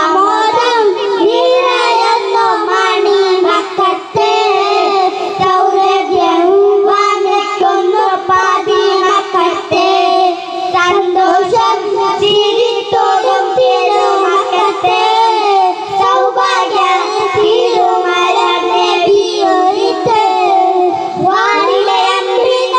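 Three young boys singing together into handheld microphones, amplified, in one melodic line with long wavering held notes.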